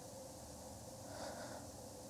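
A man breathing softly, one audible breath about a second in, over a faint low hum.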